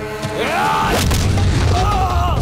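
Action-film fight soundtrack: a rising shout about half a second in, then loud booming score with sharp hit effects from about a second in.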